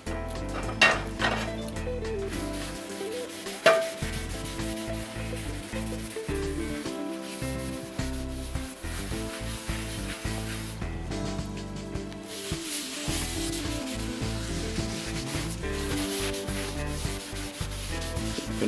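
A cloth rubbing over a hot, oiled cast iron skillet as it is wiped down, with two sharp knocks in the first four seconds.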